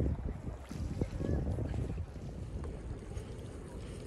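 Wind buffeting the microphone as a low rumble, dropping to a quieter, steady wash about halfway through.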